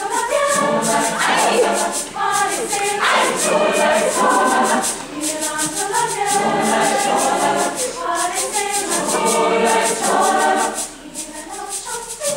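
Large mixed choir singing in full harmony, with a shaker-like rattle keeping a fast, even beat under the voices.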